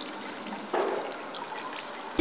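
Steady flowing, splashing water of a waterfall, with a soft swell in the rush about three-quarters of a second in.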